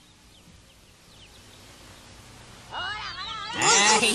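A faint hiss, then about three seconds in, high-pitched cries that rise and fall in pitch begin. Several overlap and grow louder near the end.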